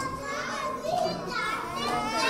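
Young children talking and calling out at once, their high voices overlapping.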